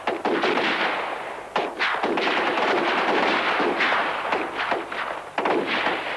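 Rifle gunfire: an irregular series of shots, some in quick succession, each trailing off in a noisy echo.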